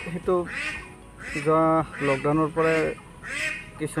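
A man's voice speaking in short phrases with brief pauses.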